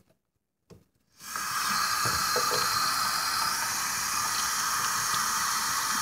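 Bathroom sink faucet turned on about a second in, then tap water running steadily into the sink.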